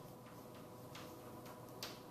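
Chalk writing on a blackboard: a few faint, irregular taps and scratches of chalk strokes, the sharpest one just before the end, over a faint steady room hum.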